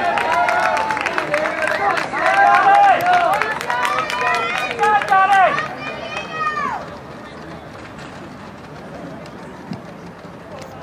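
Several spectators shouting and yelling encouragement at the passing pack of runners, loud for about seven seconds, then dying down to a quiet background murmur.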